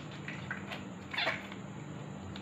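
Blue glitter slime being pulled from its tub and stretched by hand, with a few faint sticky clicks, then one louder, longer squelch that falls in pitch a little over a second in.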